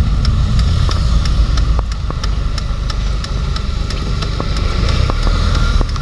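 Car engine and road rumble heard from inside the cabin while driving slowly, a steady low drone, with a light regular ticking about three times a second.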